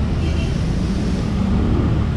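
Wind rushing over an action camera's bare microphone on a moving scooter, with the Honda Click 150i's single-cylinder engine running steadily underneath.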